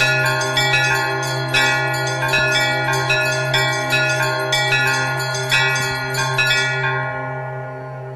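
Instrumental interlude of a karaoke backing track for a devotional song: a quick run of ringing bell-like chime notes, two or three a second, over a steady low drone. The chimes stop about a second before the end and the music fades.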